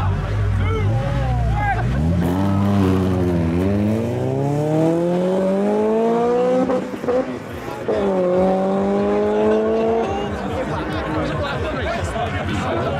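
Drag-racing cars launching from the line and accelerating hard away: a low engine rumble at the line, then an engine note climbing steadily in pitch, breaking off briefly at a gear change about seven seconds in and climbing again before it fades into the distance.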